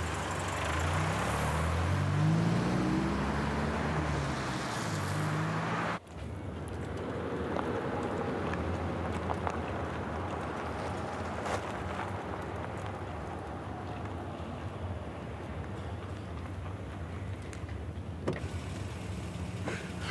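Full-size van's engine accelerating, its pitch climbing over the first few seconds as it pulls away. After a sudden cut about six seconds in, the van's engine and road noise run on more steadily and quietly as it drives off.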